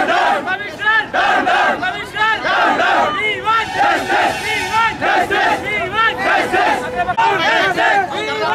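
A crowd of protesters shouting slogans together, many voices at once, without a break.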